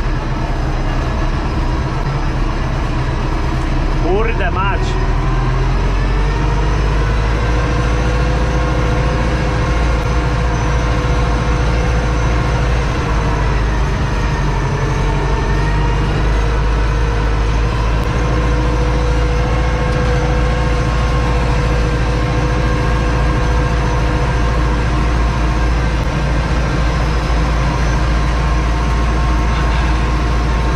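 Farm tractor's diesel engine running steadily under load, heard from inside the cab, with a rattly drone. A short rising tone sounds a few seconds in, and the engine note sags briefly about halfway through before picking up again.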